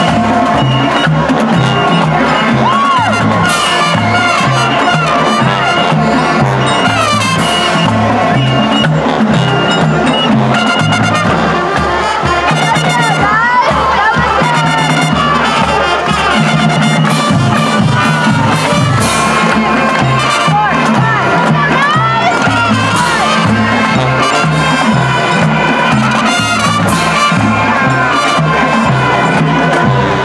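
High school marching band playing live: brass over a stepping low-brass bass line and drums, with a steady beat.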